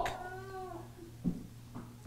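A pause between phrases of preaching: a faint voice fading out in the first part and a brief soft sound a little past a second in, over a low steady hum.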